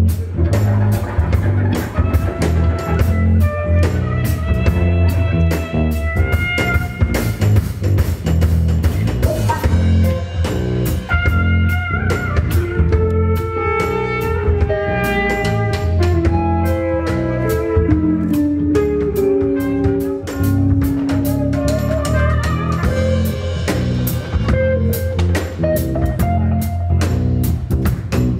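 A live jazz-rock band playing an instrumental: drum kit, bass guitar and guitar under a melody carried by violin and trumpet.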